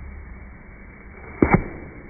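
A short, sharp double knock about one and a half seconds in, over a low steady background.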